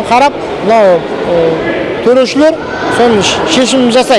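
Only speech: a man talking, over the steady background hubbub of a crowded hall.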